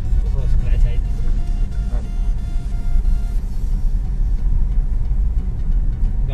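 Low, steady rumble inside a car's cabin as it rolls slowly along an unpaved dirt track: tyre and road noise with the engine underneath.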